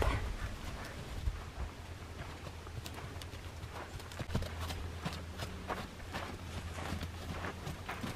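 Palomino Morgan gelding's hooves moving over the soft sand footing of a round pen: faint, irregular hoofbeats, with a low steady hum underneath.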